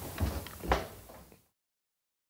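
A door being shut, with two knocks about half a second apart over faint room noise. The sound then cuts off to dead silence a little after a second in.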